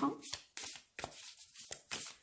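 A deck of matte cardstock oracle cards being shuffled by hand, overhand style: a quick run of short, soft card slaps and papery rustles, several a second.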